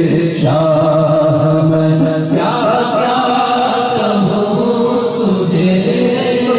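A man's voice singing a naat without instruments, drawing out long held, ornamented notes into a microphone.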